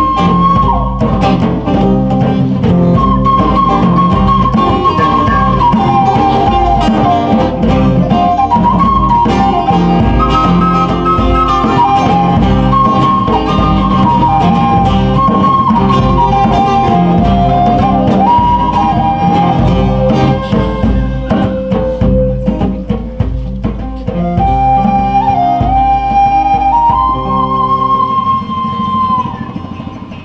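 Live instrumental music: a flute melody in long held notes over acoustic guitar and hand-played djembe drumming.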